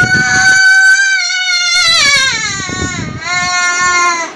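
A child wailing: one long high cry that holds its pitch and then falls away, followed near the end by a second, shorter cry.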